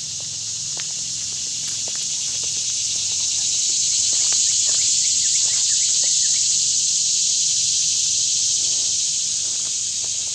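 A high, steady insect buzz from the surrounding woods that swells toward the middle and eases off near the end. A few faint footsteps on gravel are heard early on.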